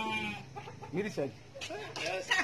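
Domestic chickens clucking: a drawn-out call at the very start, then a few short clucks about a second in.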